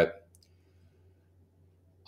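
Near silence: faint room tone with a low steady hum, and a couple of faint clicks of a computer mouse shortly after the start.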